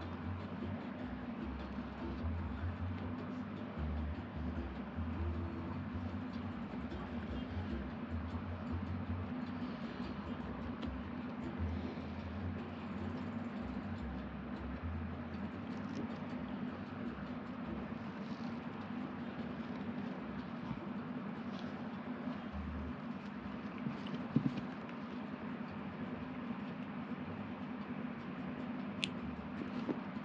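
Steady low background hum with faint handling noises from the nylon net and twine being worked by hand, and a couple of light ticks near the end.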